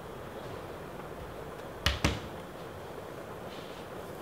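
A rubber stamp block knocked down twice in quick succession, two sharp taps a little under two seconds in, as it is inked and pressed.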